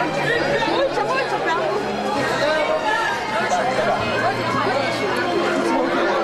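A crowd of many people talking at once, their voices overlapping in continuous chatter.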